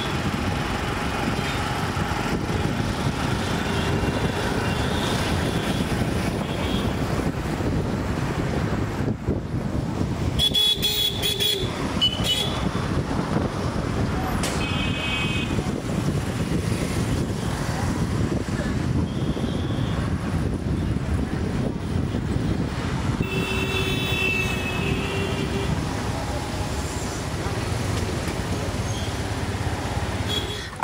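Steady city traffic heard from a moving vehicle: a constant low engine and road rumble, with vehicle horns tooting several times, short blasts about eleven, twelve and fifteen seconds in and a longer one about twenty-four seconds in.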